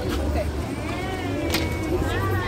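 Chatter of several voices over a steady low rumble, with a brief click about one and a half seconds in; no band music is playing.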